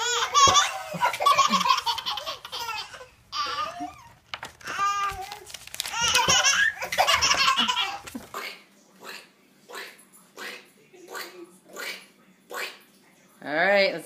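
Babies laughing, in long peals at first, then in short bursts about twice a second from about eight seconds in.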